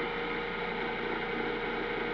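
Small electric motor running steadily: an even mechanical whir with a constant hum.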